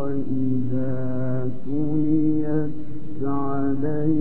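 A man reciting the Quran in a melodic, chanted style, holding long ornamented notes that slide between pitches from phrase to phrase.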